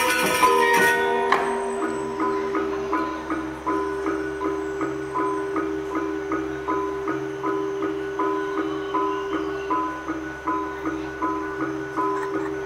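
Balinese gamelan playing Legong dance music: a loud, dense passage of struck bronze metallophones breaks off about a second in. It gives way to a quieter, evenly repeating figure of struck notes, about two a second, over sustained low ringing tones.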